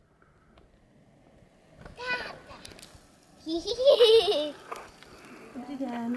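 A child's voice calling faintly from some way off, a short call about two seconds in and a longer, high, rising-and-falling call around four seconds in, after a near-silent start.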